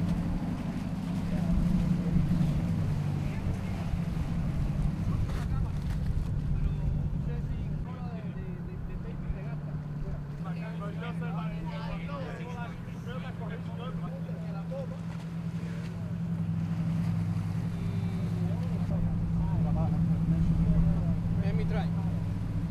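Boat engine running steadily, a low hum that shifts in pitch about ten seconds in, with faint voices in the background.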